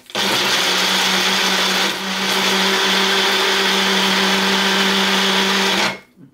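Small personal blender running as the cup is pressed down onto its motor base, blending a smoothie of fruit, yogurt, milk and ice. It is a loud, steady whir with a low hum. It cuts out for a moment at the start, dips slightly about two seconds in, and stops just before the end.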